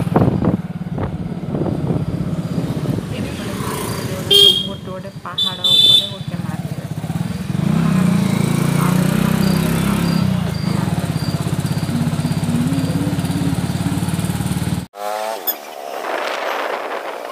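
Motorbike ride through a street: engine and wind rumble on the microphone, with two short horn toots about four and a half and five and a half seconds in. The sound cuts off suddenly near the end.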